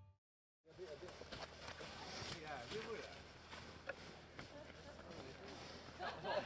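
After about half a second of silence, faint distant voices with scattered small clicks and knocks.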